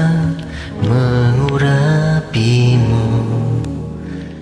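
A young man singing an Indonesian worship song over a karaoke backing track, holding two long notes, each sliding up into pitch as it begins.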